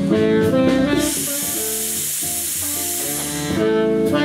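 Steam hissing from a narrow-gauge steam locomotive's open cylinder drain cocks, a steady rush of about two and a half seconds that starts a second in and stops near the end. Live jazz band music with saxophone, guitar and drums plays around it.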